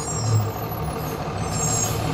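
City bus engine running steadily at low speed as the bus crawls over a potholed street.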